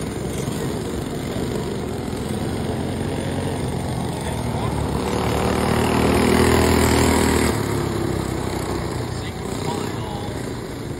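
Small racing-kart engines running laps on a dirt oval. One kart passes close by, its engine note climbing and growing loudest about six to seven seconds in, then dropping away suddenly.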